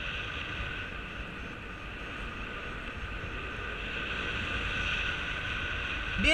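Steady rush of airflow over the camera microphone of a paraglider in flight, with a faint steady whistle above the rumble, swelling slightly near the end.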